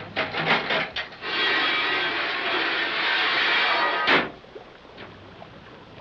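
Radio-drama sound effect of a submarine's nose port opening: a few knocks, then a steady rushing noise for about three seconds that ends in a single clank.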